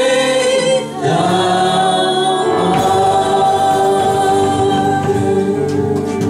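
Live worship band: several voices singing together in harmony over electric guitars. After a short break just under a second in, they hold one long sustained note.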